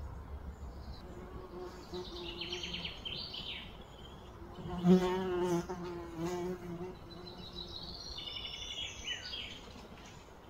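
An insect buzzing close by: a low, wavering hum that swells loudest about halfway through and fades out a couple of seconds later. High chirping trills come before and after it.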